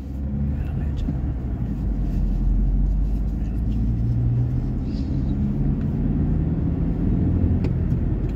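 Car engine and road rumble heard from inside the cabin while driving, a steady low drone with engine tones that shift slowly in pitch.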